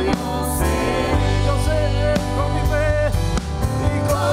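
Live gospel worship music: a man singing into a microphone over electric bass and a backing band with percussion.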